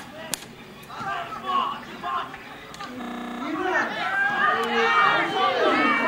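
Several people at the sideline of a football match calling out and talking over one another, getting louder through the second half. A single sharp knock comes just after the start, and a short buzzing tone about three seconds in.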